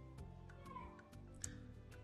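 Quiet background film music with soft sustained notes. A brief faint rising-and-falling cry comes about three quarters of a second in.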